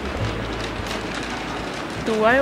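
Outdoor street ambience: a steady, noisy rumble with no distinct events.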